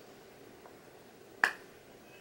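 A single sharp plastic click about one and a half seconds in, as a NYX High Glass illuminating powder compact snaps open.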